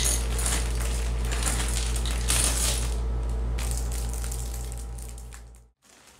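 A plastic bag of small curtain-track runners and metal brackets with screws being handled, the parts clinking and rattling against each other with the bag crinkling. The clinking is dense for about the first three and a half seconds, then fades away near the end.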